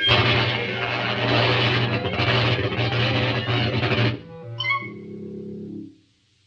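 Cartoon disintegrator ray-gun sound effect: a harsh, buzzing blast that starts suddenly and lasts about four seconds. It is followed by a few held musical notes that cut off abruptly at the end.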